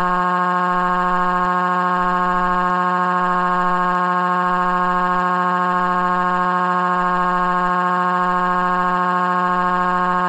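A cartoon character's crying: one long wail held at a single unchanging pitch.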